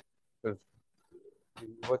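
A man's voice during a lecture: a short spoken syllable, a faint low hum-like murmur, then the start of the next word.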